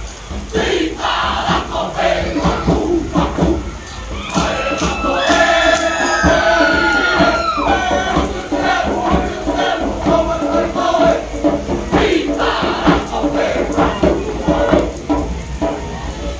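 A Cook Islands dance group chanting and shouting together over percussion strikes, with one long held cry that falls in pitch a few seconds in.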